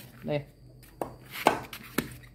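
Blade hand-chopping tough lim mushroom (a lingzhi-type bracket fungus) on a wooden board: three sharp chops about half a second apart, starting about a second in.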